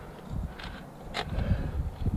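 Low, uneven rumble of wind and handling on a helmet camera as a climber moves in a crack, with two short clicks of metal climbing gear (carabiner and cam) at about two-thirds of a second in and again just after a second in.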